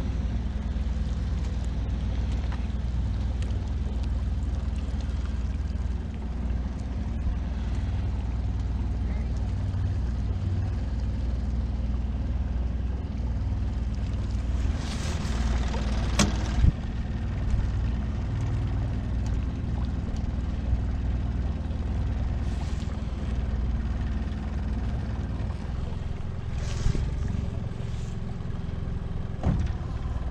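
Small Yamaha outboard motor running steadily at low throttle, pushing a small boat. A single sharp knock comes about halfway through.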